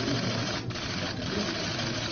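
Many camera shutters clicking rapidly and continuously, a dense clatter with a couple of brief lulls.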